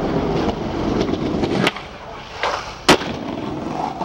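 Skateboard wheels rolling over a stone plaza, with a sharp clack about a second and a half in and a louder board impact about three seconds in.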